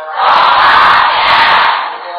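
A group of monks calling out together in one loud, drawn-out call lasting about a second and a half, the 'sadhu' response chanted at the close of a sermon.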